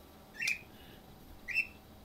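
A small bird chirping twice, two short high chirps about a second apart.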